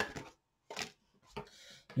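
Cards being handled: a few short snaps and slides of card stock as a card is drawn from the deck and laid down on the table, with a brief sliding hiss near the end.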